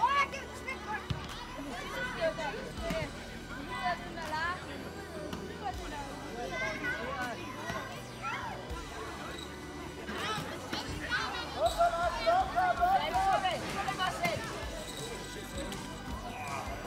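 Voices of players, coaches and spectators calling and shouting across a youth football pitch, several overlapping, loudest a little after the middle. There is a sharp knock right at the start, a ball being kicked.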